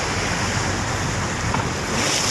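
Steady rush of wind buffeting the microphone over choppy sea waves.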